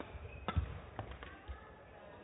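Badminton rackets hitting the shuttlecock in a rally: one sharp hit about half a second in, then two lighter knocks about a second and a second and a half in as the rally ends.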